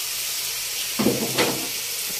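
Steady sizzling hiss of food frying in a hot pan, with a short burst of voice about a second in.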